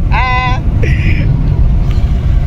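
A man laughing briefly at the start, over the steady low drone of the Toyota GR Yaris's turbocharged three-cylinder engine and road noise heard inside the cabin while driving.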